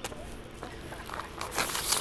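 Nylon kite and its fabric bag being handled as the kite is pulled out, ending in a scratchy rasp lasting about half a second, the loudest thing here.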